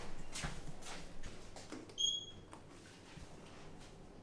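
Footsteps on a hard floor, several steps about half a second apart, then a single short high-pitched tone about two seconds in.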